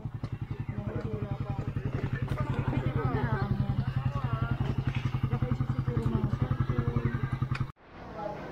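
Motorcycle engine idling close by, a steady even pulse of about ten beats a second, with voices chattering faintly over it. It cuts off abruptly shortly before the end.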